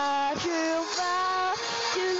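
A voice singing the lyric 'I had to fall, to lose it all' over a karaoke backing track, with long held notes on the phrase ends.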